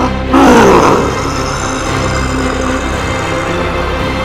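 A loud monster vocal roar, a performed sound effect, comes in about a third of a second in, falls in pitch and fades within about a second, over dramatic background music.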